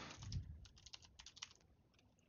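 Computer keyboard being typed on: a quick, uneven run of key clicks, with a low thump about a third of a second in, fading toward the end.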